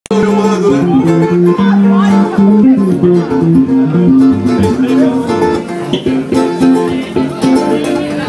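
Live small-band music: acoustic guitar playing with short percussive hits and a bass line underneath.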